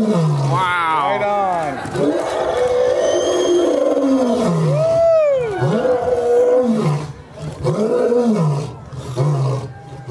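Lion roaring: a series of long roars, each rising and falling in pitch, with short gaps between the later ones.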